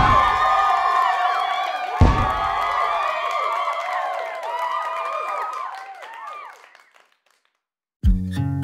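Two confetti cannons firing, a low pop at the start and another about two seconds later, amid a crowd cheering and whooping. The cheering fades away by about seven seconds in.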